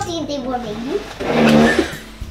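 A voice making wordless vocal sounds that rise and fall, with a louder drawn-out sound about a second and a half in.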